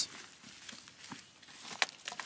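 Faint scuffing and crunching of loose, freshly tilled dry clay soil and clods being handled and walked on, with one sharp tick near the end.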